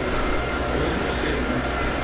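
Steady background noise: an even hiss with a low hum underneath and no distinct events.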